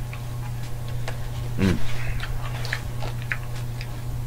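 Scattered light clicks and ticks of a fork working at a salad, with a closed-mouth "mm" about one and a half seconds in. A steady low hum runs underneath.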